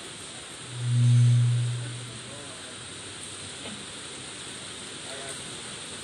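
Steady hiss of heavy rain on a metal roof. A low, smooth hum swells up and fades away for about a second and a half near the start.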